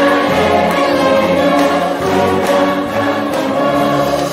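A massed brass band and a mixed choir of men's and women's voices performing a festival song together, the choir singing over sustained brass chords at a steady, full level.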